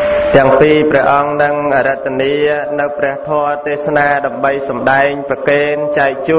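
A Buddhist monk's solo chant, a sung, melodic recitation in phrases of held notes that bend in pitch, with brief gaps between phrases.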